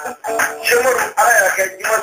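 A song: a man singing over instrumental backing.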